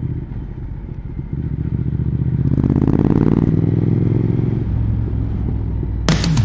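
Triumph Speed Twin's parallel-twin engine running as the motorcycle is ridden, heard from the rider's position. It grows louder about two and a half seconds in, then eases off again.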